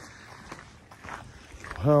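Faint footsteps on a gravel trail. A man's voice starts near the end.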